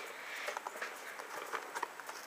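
A plastic blister-pack toy package handled and shifted, giving a few faint light taps and clicks.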